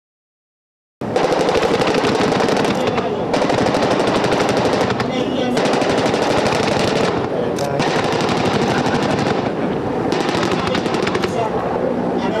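Automatic machine-gun fire in long, rapid bursts that starts suddenly about a second in and runs on with only brief easings, rounds striking the sea.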